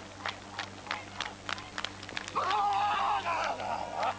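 Javelin thrower's spiked shoes striking the track during the run-up, about three sharp steps a second, then a loud yell lasting over a second at the throw.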